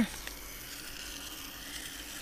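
A steady, even hiss with a faint click about a quarter second in.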